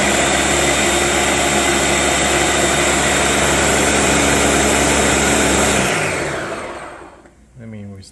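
Ninja Professional Plus countertop blender running steadily at high speed through a liquid mix of cream and sweetened condensed milk. About six seconds in the motor cuts off and winds down over a second.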